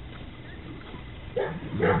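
Low background sound, then about a second and a half in a woman's voice breaks into laughter, in short repeated bursts.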